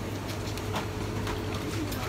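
Shop background: a steady low hum with a faint thin steady tone over it, a few light clicks, and a brief faint voice near the end.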